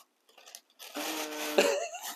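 A man's drawn-out, breathy vocal sound, not words, starting a little under halfway in and lasting about a second, its pitch rising at the end.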